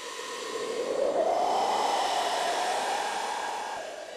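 A rushing, wind-like whoosh that builds over the first second, its pitch rising slightly, then sinks and fades near the end.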